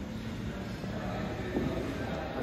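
Steady low rumble of background noise, with a brief muffled sound about one and a half seconds in.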